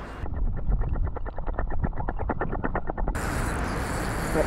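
Spinning reel being wound in: a rapid, even ticking, about ten a second, that stops about three seconds in, followed by steady outdoor background noise.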